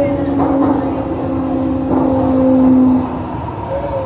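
Underground MRT train running, with a steady rumble under the whine of its electric traction motors. The whine slowly falls in pitch as the train slows, then cuts off about three seconds in.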